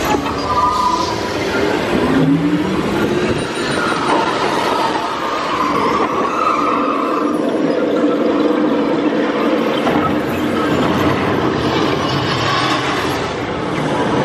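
Test Track ride vehicle running along its track: a steady, loud running noise with shifting tones from the ride's sound effects over it.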